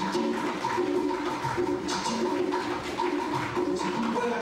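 A live Latin band playing a rumba-style number, with congas and timbales striking over upright bass and acoustic guitar in a short repeating melodic figure.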